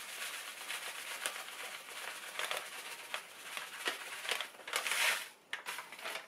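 Panko breadcrumbs being poured onto a plate: a continuous dry crinkling rustle of many fine crackles, louder for a moment about five seconds in.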